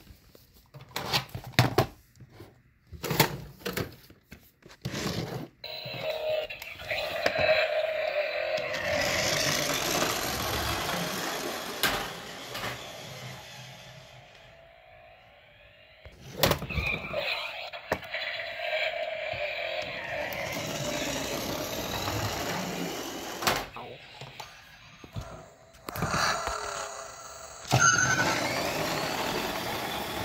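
Battery-powered toy car playing its electronic music and sound effects through a small speaker as it runs along the track. The sound fades out over several seconds, then starts up loud again about halfway through. Sharp clicks and knocks of the toy being handled come first.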